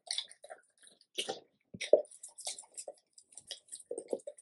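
A black Labrador retriever licking and chewing at a mound of raw meat: wet smacking and licking sounds in short, irregular bursts.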